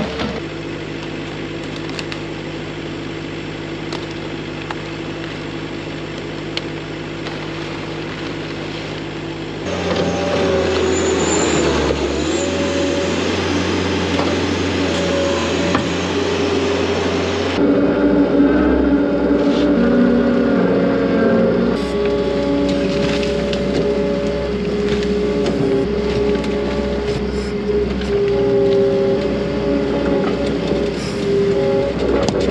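Turbocharged New Holland LS170 skid steer engine running under load while its bucket works silage. The steady engine note changes abruptly about a third of the way in and again a little past halfway.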